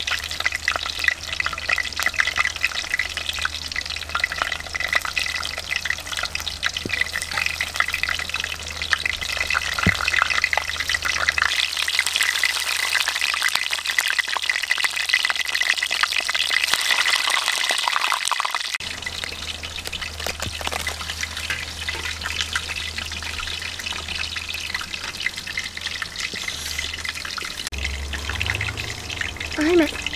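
Fish frying in hot oil in a pan: a continuous crackling sizzle, strongest around the middle.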